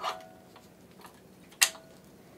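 Metal quick-disconnect coupling on an air supply hose being fitted to a breathing-air pump's nipple: a small click with a brief ring at the start, then a sharper, ringing click about one and a half seconds in as the coupling snaps home.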